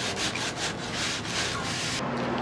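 Wooden boards being sanded by hand: quick, even back-and-forth scraping strokes of abrasive on wood.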